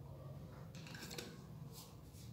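Faint handling noise: light clicks and rustling as a pen is picked up and held.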